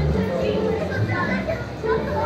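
Several people talking at once, a babble of voices with no single clear speaker, over a low steady rumble.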